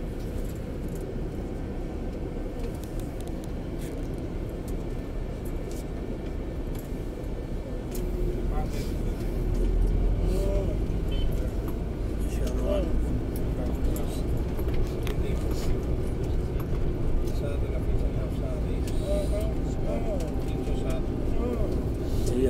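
Bus engine and road noise heard from inside the moving bus, a steady low rumble that grows louder and heavier about eight seconds in. Faint voices can be heard over it.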